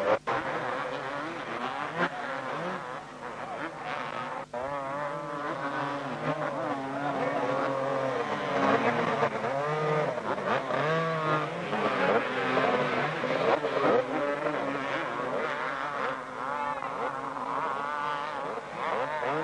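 Several two-stroke 250cc motocross bikes revving hard and unevenly, their pitches overlapping and rising and falling, as the riders fight for grip in deep mud.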